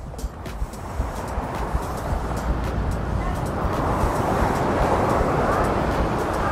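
Ocean surf washing onto the shore: a rushing hiss that swells over several seconds and peaks near the end.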